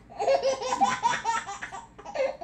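A person laughing: a quick run of high-pitched laughs, about five a second.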